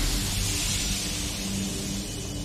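Trailer sound effect: a loud, steady rushing whoosh of noise, the drawn-out tail of a blast that began just before, over a low sustained music drone.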